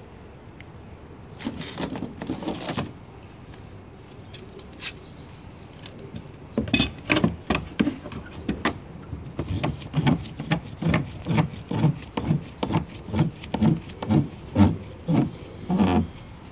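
Screw bar clamps being tightened on a glued wood layup: from about six seconds in, a run of short repeated squeaks and clicks, about two or three a second, as the handle is turned.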